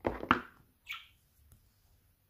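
Paper leaflets and the cardboard phone box being handled: a quick rustle with a couple of sharp knocks right at the start, then a short papery swish just under a second later.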